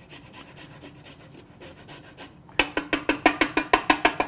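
Lime skin being rasped on a stainless rasp zester: light, faint strokes at first, then from about two and a half seconds in a quick run of loud, even scraping strokes, about eight a second.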